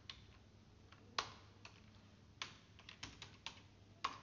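Faint computer-keyboard keystrokes, typing sparsely: a single key about a second in, another a little after two seconds, then a quick run of several keys near the end.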